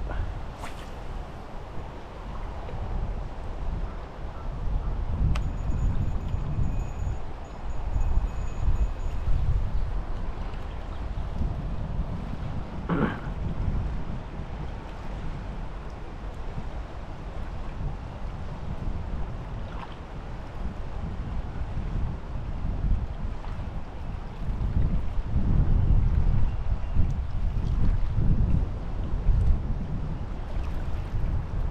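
Wind buffeting the microphone in gusts: a low rumble that swells and fades, loudest about a quarter of the way through and again near the end.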